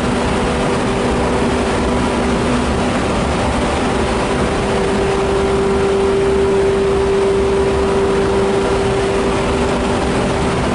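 Renfe class 269 electric locomotive standing at the platform with its auxiliaries and cooling blowers running: a steady loud drone with a humming tone that grows stronger through the middle and eases off near the end.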